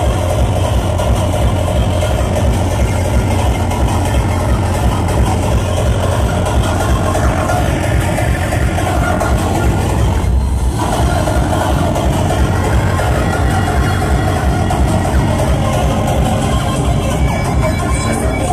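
Hardcore techno played loud over a club sound system, with a fast, pounding kick drum. It is heard through a phone's microphone. The middle of the sound dips briefly about halfway through.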